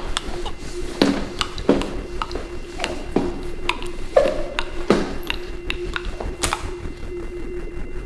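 Irregular clicks, scratches and rustles, several a second, over a steady low hum, from a hamster moving about in its cage bedding.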